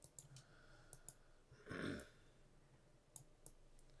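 Near silence, broken by a few faint clicks and, a little under two seconds in, a short breath.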